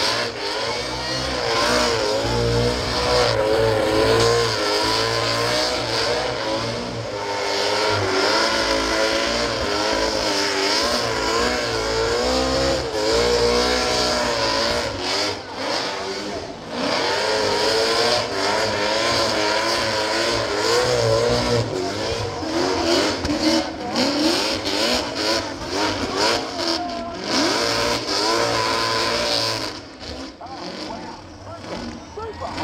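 Burnout car's engine held at high revs with its rear tyres spinning, the pitch wavering up and down as the throttle is worked. It dips briefly about halfway through and turns choppy, cutting in and out, in the last several seconds.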